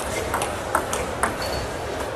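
Table tennis ball being struck back and forth in a rally: a quick series of sharp, light clicks as it hits the bats and the table, over a steady background hiss.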